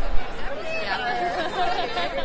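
Voices talking close to the phone over a busy room's chatter, with a brief thump at the very start.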